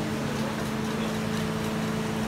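Steady mechanical hum from the cooking equipment of a row of serabi pans on a gas stove, with a constant low tone over a noisy rush.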